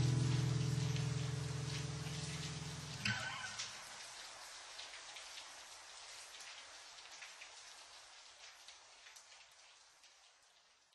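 Recorded rain patter closing out a song. The last held low chord of the music dies away about three seconds in, leaving the rain alone, which fades steadily to nothing.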